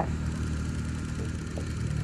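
A steady low hum like an engine running, with no other clear event.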